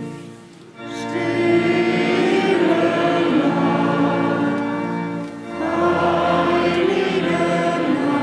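Choral Christmas music: voices singing two long, swelling phrases. The first comes in about a second in after a brief dip, and the second starts just past halfway.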